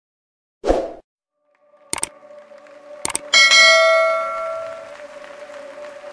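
Subscribe-and-notification-bell animation sound effects: a short thump under a second in, two quick double clicks about a second apart, then a bright bell ding, the loudest sound, which rings out and fades over about two seconds.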